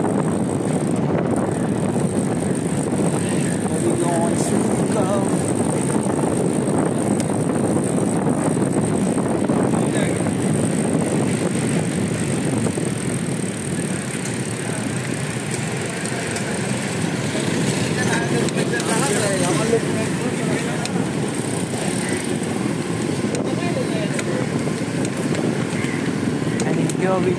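Steady rush of wind buffeting a handlebar-mounted camera's microphone as a Decathlon Triban RC 100 road bike is ridden at speed, mixed with tyre and road noise and passing city traffic.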